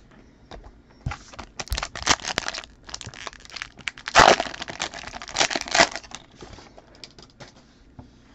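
Foil trading-card pack wrapper crinkling and tearing as it is pulled open by hand, in a run of crackly bursts with the loudest about four seconds in, thinning to light crinkles near the end.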